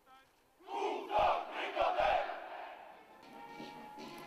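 A loud, drawn-out shouted military drill command from the ranks of a ceremonial guard, starting about a second in and lasting about two seconds, with a few deep thumps under it.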